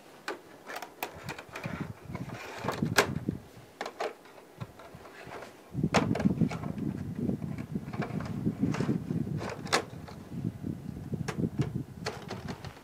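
Plastic-framed mesh air filters being handled and slid back into a Daikin Stylish wall-mounted air-to-air heat pump unit: scattered plastic clicks and knocks, then from about halfway a denser low rustling with further clicks as the filters are pushed into place and the panel is closed.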